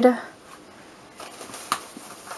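Faint rustling of paper packaging being handled, with one sharp tap near the end.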